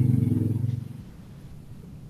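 A motor vehicle's engine heard through an open video-call microphone, a low steady drone that fades out about a second in.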